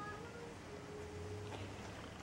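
A Maine Coon cat giving one long, even meow, with a light tap about one and a half seconds in.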